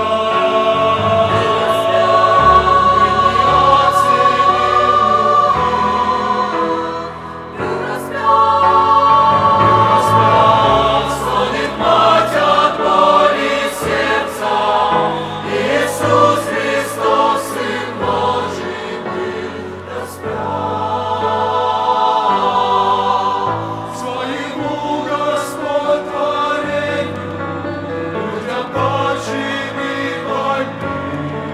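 Mixed choir of men's and women's voices singing a Russian-language hymn together, with a short break between phrases about seven seconds in.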